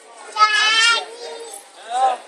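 A person's high-pitched, wavering squeal lasting about half a second, followed near the end by a shorter voiced call, over the murmur of a crowded hall.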